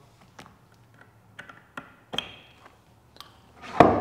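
Small, sparse metallic clicks and taps as 5 mm drill bits are fitted into a removable multi-spindle drilling head, then one loud knock near the end as the head is handled.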